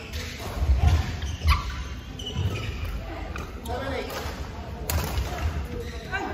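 Badminton rally in a large hall: rackets strike a shuttlecock with sharp cracks a second or so apart, while shoes thump and squeak on the court floor, with voices in the background.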